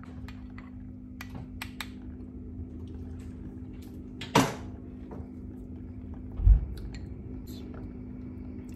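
Handling of kitchen utensils and dishes: a few light clicks, a sharp clink about four seconds in, and a low thump about six and a half seconds in, over a steady low hum.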